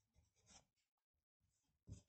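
Very faint marker pen writing on paper, a few short strokes heard against near silence.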